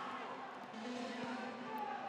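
Faint football match sound from a game played in an empty stadium: distant players' shouts over a low steady background, with no crowd noise.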